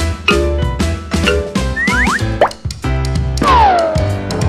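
Bouncy children's cartoon music with a steady bass beat. About halfway through come quick rising pitch glides, and near the end one long falling glide.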